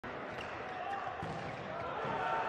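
A handball bouncing on an indoor court floor, a few knocks about half a second apart, over the steady ambience of a large sports hall with voices calling.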